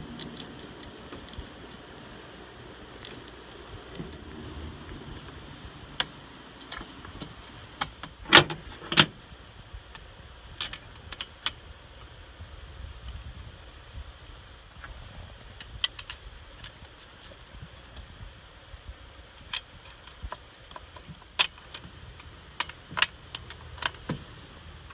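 Steel saw chain links clinking and rattling as a new chain is handled and fitted around a Stihl chainsaw's bar, with scattered sharp metal clicks. The loudest two come about eight and nine seconds in, and there are more near the end.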